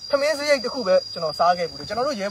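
A man talking, with a steady high-pitched insect drone, like crickets, behind him.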